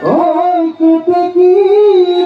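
A bihu pepa, the buffalo-horn pipe, playing loud held notes with a slight waver, opening with a quick upward swoop in pitch.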